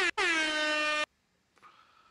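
Air horn sound effect: a brief blip, then one long steady horn note that cuts off sharply about a second in.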